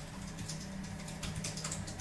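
Typing on a computer keyboard: a quick, irregular run of key clicks over a low steady hum.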